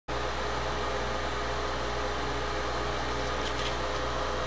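Steady low hum with an even hiss and no distinct events.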